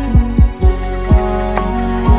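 Lofi hip hop beat: deep kick drums that drop in pitch hit about five times over sustained keyboard chords. The high end is filtered out for the first half second, then comes back in.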